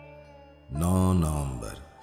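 Background music: a soft held instrumental tone, then a deep male voice chanting one long held note, entering loudly about a third of the way in.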